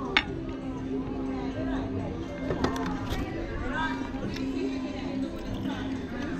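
Background voices and music, with a single sharp clink of a metal fork against the wooden serving board just after the start.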